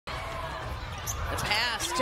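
Basketball play on a hardwood court, with the ball bouncing, over steady arena crowd noise.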